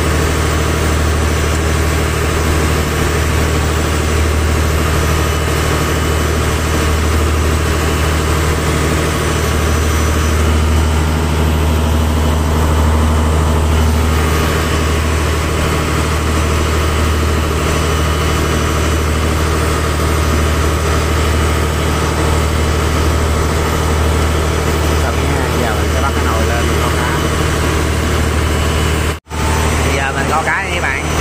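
Fishing boat's engine running with a steady, loud low drone, cutting out briefly near the end.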